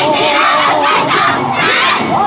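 A yosakoi dance team, many of them girls, shouting together in unison as part of the dance: about three loud group shouts.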